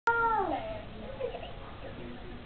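A young child's high-pitched wail that falls in pitch over about half a second, followed by a short softer vocal sound about a second in.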